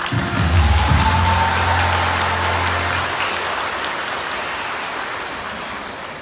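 Audience applause: a dense, even clapping that slowly thins out. Under its first three seconds a low final note of the dance music holds and then stops.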